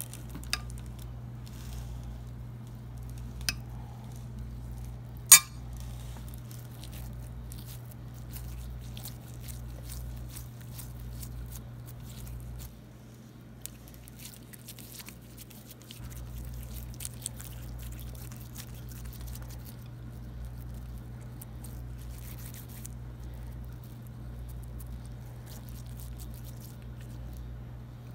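Kitchen handling sounds while shaping rice kubba: a metal spoon scraping minced-meat filling in a steel bowl and soft squishing of the rice dough, with small scattered clicks. One sharp clink of metal on the bowl about five seconds in is the loudest sound, all over a steady low hum.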